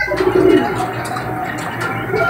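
Domestic pigeon giving a low coo about a quarter of a second in, over a low steady hum.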